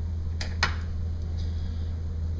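Two quick, sharp clicks about half a second in, then a faint tick, over a steady low hum: metal scissors being handled as athletic tape on a toe is about to be cut.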